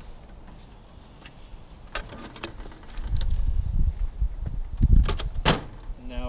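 Aluminium camp-kitchen table and its telescoping leg being handled: a few sharp clicks and knocks, the loudest near the end, over low rumbling handling noise.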